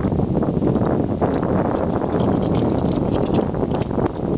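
Wind buffeting the microphone on open water: a loud, steady rumbling noise, with faint small clicks and taps over it.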